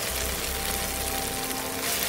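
Doubanjiang and sweet bean sauce sizzling in oil in a nonstick wok over low heat, a steady hiss.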